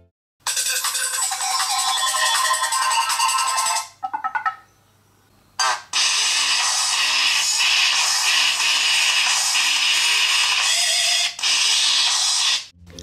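Ringtone previews playing from a Panasonic Eluga A3 smartphone's loudspeaker, loud and clear, with little bass. One tune plays for about three and a half seconds, stops, and after a short pause a second tune starts about six seconds in.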